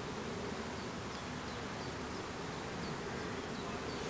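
Steady low buzzing of flying insects, with a few faint short high chirps scattered through it.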